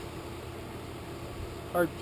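Steady low hum of a reef aquarium's sump pumps and equipment running.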